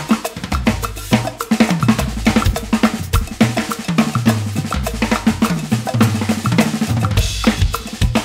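Acoustic drum kit, Pearl drums with Meinl Byzance cymbals, played in a busy groove over a percussion backing track with cowbell. Twice the toms step down in pitch, a few seconds in and again near the end, in descending fills.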